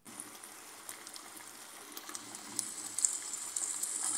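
Minced beef stew sizzling gently in a frying pan: a steady soft hiss with scattered tiny crackles, growing a little louder.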